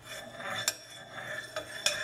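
A metal utensil scraping and clinking in a cooking pot, with two sharper clinks, one just under a second in and one near the end.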